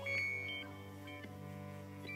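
Quiet live music of a guitar, cello and drum kit trio: sustained low notes held under a short, bright, high ringing note near the start.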